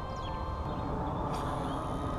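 Outdoor background: a low wind rumble on the microphone with faint bird chirps, and one short sharp rustle about one and a half seconds in.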